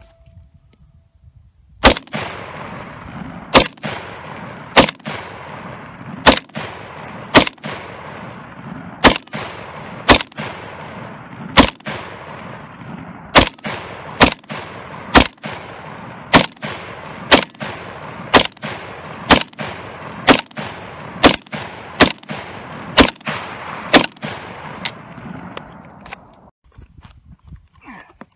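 PTR-91 semi-automatic rifle in .308 Winchester (7.62×51mm) firing a long string of about thirty rapid shots, roughly one to two a second, each followed by a rolling echo. The shooting starts about two seconds in and stops near the end.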